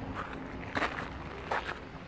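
Footsteps on sand-dusted granite bedrock, about three steps in two seconds, each a short scrape.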